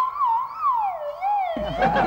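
A man's high-pitched wail of mock crying, wavering up and down in pitch. About one and a half seconds in, a low rumbling noise joins it.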